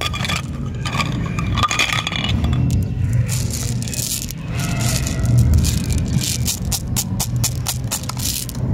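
Jelly beans clicking and rattling against each other as they are gathered and scooped up by hand, with plastic candy tubes scraping; a low steady hum runs underneath.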